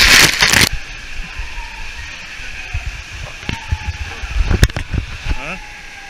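Loud rush and splash of water as a rider goes down an open water slide with spray over the lens; it cuts off abruptly under a second in. After that there is a quieter wet hiss with a few scattered knocks.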